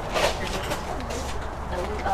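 Quiet, indistinct background voices over a steady low hum, with a few faint clicks.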